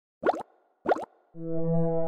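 Logo intro sting: two short pops about half a second apart, each with a quick pitch glide, then a sustained synthesizer chord that comes in about a second and a half in and holds, swelling.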